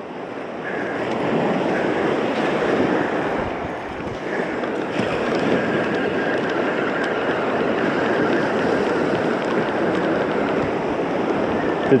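Small surf waves breaking and washing up the sand in a steady rush that eases briefly about four seconds in.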